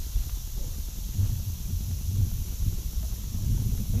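Wind buffeting an outdoor microphone: a low, irregular rumble that swells and drops, over a faint steady hiss.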